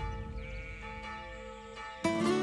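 Church bells ringing on after being struck, several steady tones slowly dying away.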